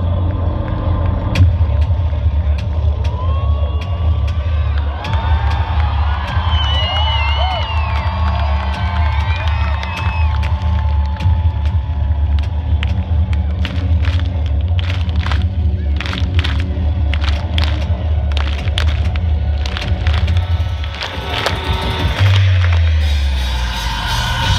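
Loud concert intro music over the PA: a deep, steady bass drone with wavering sliding tones in the middle, then a run of sharp hits in the second half, with the crowd cheering. Near the end the drone breaks off briefly and a falling low tone leads into the song.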